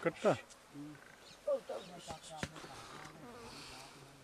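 Flies buzzing close by, a broken low hum that comes and goes, with short loud calls from men near the start.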